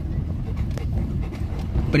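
A car creeping slowly along a dirt and gravel road, heard from inside the cabin: a steady low rumble of engine and tyres, with faint small clicks of stones under the wheels.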